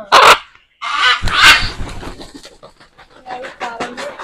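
Large macaw giving loud, harsh screeches, the longest about a second in, then a quick run of wing beats as it takes off and flies to a perch.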